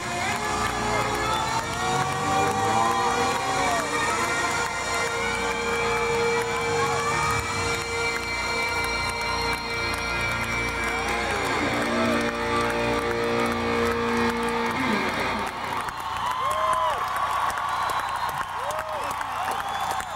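A live rock band holding the long closing chords of a song over a steady bass, which stop with a falling slide about fifteen seconds in. A large crowd cheers and whoops, louder once the music ends.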